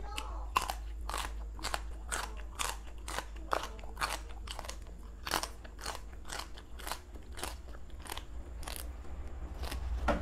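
Raw water spinach stems crunching crisply as they are bitten and chewed close to the microphone, about two crunches a second.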